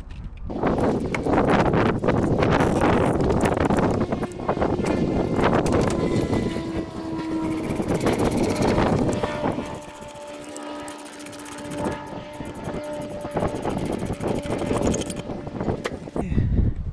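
Plastic air intake box and rubber intake duct being handled and pushed back into place: loud rustling and scraping for the first ten seconds or so, then quieter work at the duct's clamp. Steady tones of unclear source sound in the background through the second half.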